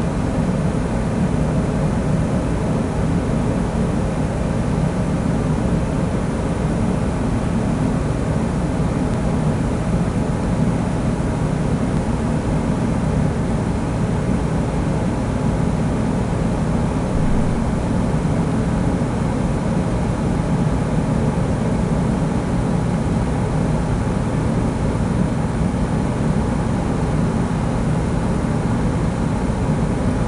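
Steady low rumbling noise that holds at one level without change throughout.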